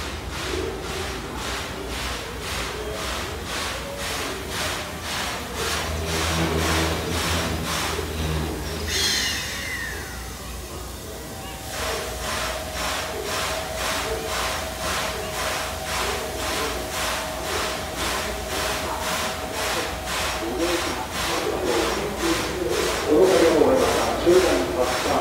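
JR Kyushu 8620-class steam locomotive pulling slowly into a station platform, with a low rumble and hiss and the voices of a waiting crowd. Partway through, a single steady tone sounds for about nine seconds, and the crowd's voices grow louder near the end.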